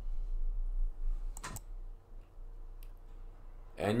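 Computer mouse clicking: a quick double click about one and a half seconds in and a fainter single click near three seconds, over a steady low hum.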